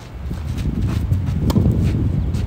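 A tennis player's shoes scuffing and shuffling on a clay court as he moves to return a serve, with one sharp hit of racket on ball about one and a half seconds in.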